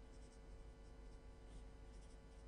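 Pen writing on paper: a few faint, short scratching strokes, over a steady low hum.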